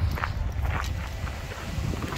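Footsteps of a walker on a dirt and gravel track, a step roughly every half second, over a low rumble.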